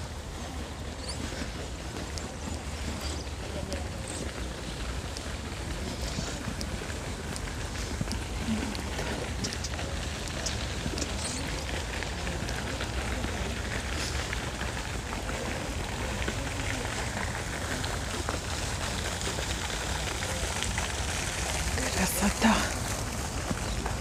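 Steady outdoor rush of noise with wind rumbling on the microphone, swelling gradually toward the end as a fountain's splashing water comes near.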